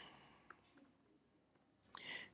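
Near silence with a few faint computer keyboard key clicks from typing: one click about half a second in and a few more near the end.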